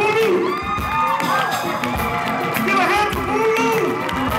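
Live band playing a steady groove on drums, bass and keyboards, with the crowd cheering and whooping over it.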